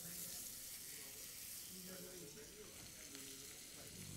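Faint sizzling of pan-seared perch frying in hot olive oil and butter.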